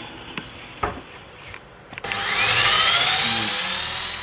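Electric drill motor spinning up about halfway through with a rising whine, running on as it bores a hole through a fir board. A light knock of handling comes just before.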